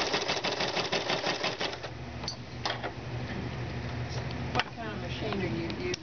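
Sewing machine fitted with a ruffler foot stitching in a rapid clatter, stopping about two seconds in, followed by a few separate clicks.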